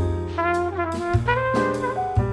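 Instrumental jazz with a brass lead, trumpet-like, playing held notes over a bass line, with a few drum or cymbal hits.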